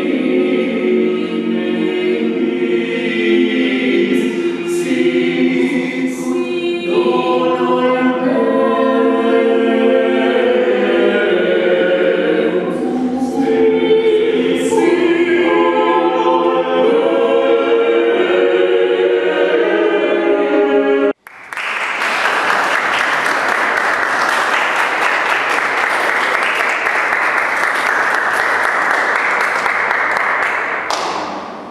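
A mixed-voice vocal octet singing a cappella in several parts. About two-thirds of the way through, the singing cuts off abruptly and steady audience applause follows.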